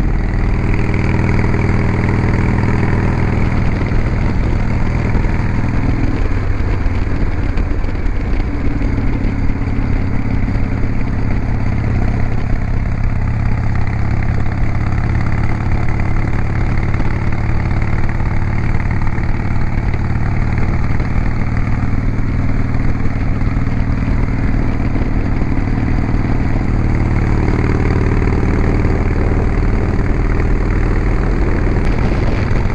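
Harley-Davidson V-twin motorcycle engine running steadily under way, with wind rushing over the bike-mounted microphone; the engine note shifts up near the end.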